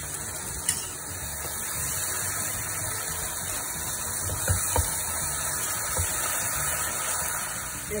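Onion-tomato masala sizzling steadily in a frying pan as yogurt is added and stirred in with a silicone spatula, with a few short knocks of the utensils against the pan.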